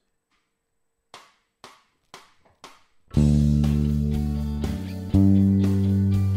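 A count-in of four clicks about half a second apart, then an electric bass (a Fender Precision Bass) playing long held root notes over the track: a low D first, then a change to G about two seconds later.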